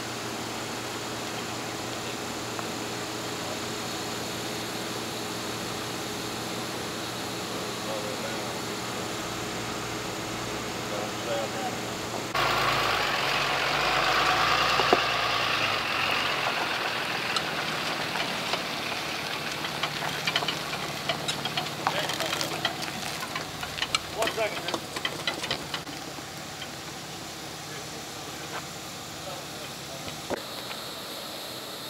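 Vehicle engine idling steadily. About twelve seconds in, the sound jumps to a louder, noisier stretch, followed by a run of scattered clanks and knocks.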